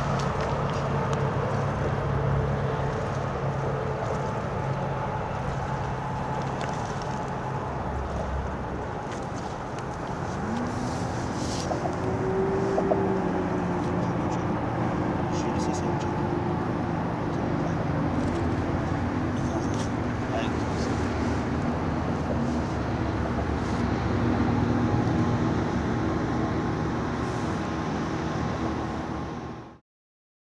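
Steady road traffic noise from a bridge overhead. About ten seconds in, a vehicle's engine note rises and then holds steady.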